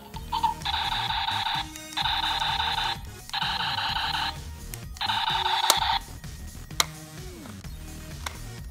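Electronic sound effect from a Buzz Lightyear action figure's built-in speaker: four beeping, buzzing bursts of about a second each with short gaps between. Two sharp clicks follow, near the end of the last burst and about a second later.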